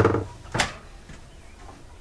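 Kitchen cabinet doors being handled, with knocks and clicks from the doors and their catches: a sharp one at the start, another about half a second in, then a few faint ticks.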